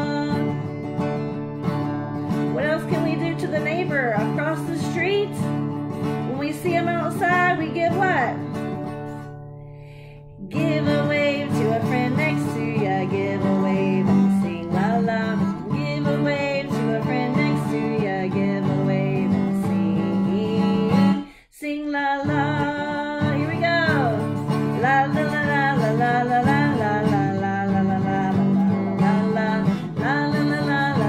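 Acoustic guitar strummed while a woman sings a children's song with it, with a short break about ten seconds in and another brief one about twenty seconds in.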